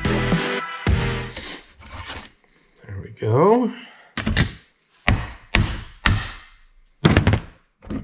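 Background music cuts out in the first second. Then the RV power jack's electric motor is worked loose from its metal gear housing, with a string of sharp knocks and clunks of metal parts, about five of them spread over the last four seconds. A short wavering tone about three seconds in is the loudest sound.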